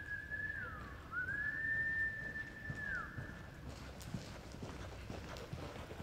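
A person whistling two long notes, each sliding up, held level and dropping away, over the first three seconds, the kind of whistle given to cheer a reining horse and rider on. After that come soft thuds of the horse's hooves loping in the arena dirt.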